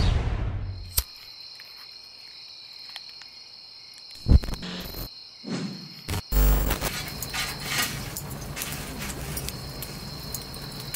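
Crickets trilling steadily in a high pitch as music fades out in the first second. A few sharp thumps and clicks come about four to six seconds in, followed by denser crackly noise.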